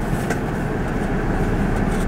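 Steady road and engine noise inside a car cabin: a low rumble with an even hiss over it.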